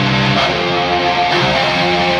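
Distorted electric guitar from a Solar guitar with an Evertune bridge, played through a Verellen amp, ringing out held chords at steady pitch. The chord changes about half a second in and again a little past a second.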